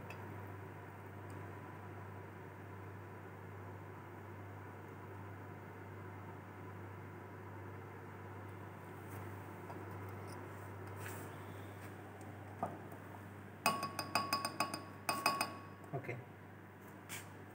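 Steady soft hiss of a lit Bunsen burner flame. Near the end, a quick run of glass clinks with short ringing notes from the lab glassware.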